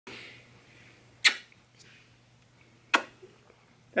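A small fluffy dog sneezing twice, two short, sharp puffs about a second and a half apart.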